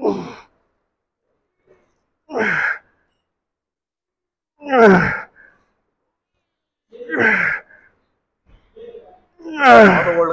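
A man's strained grunts of effort while lifting a heavy EZ-curl bar on lying triceps extensions, one falling grunt with each rep, about every two and a half seconds, five in all; the last runs longer than the rest.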